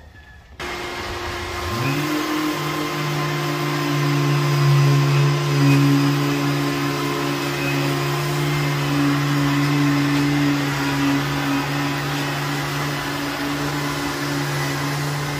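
Festool Planex 2 long-reach drywall sander running against a ceiling overhead. It is hooked to a DeWalt shop vacuum, whose rushing suction switches on abruptly just after the start. The sander's motor hum rises in pitch as it spins up about two seconds in, then holds steady.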